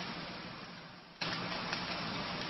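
Steady hiss-like background noise with a low hum, fading down over the first second and then cutting back in suddenly a little past the middle.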